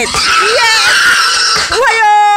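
Hog squealing in distress as it is slaughtered: a loud, harsh, continuous scream that breaks off briefly near the end.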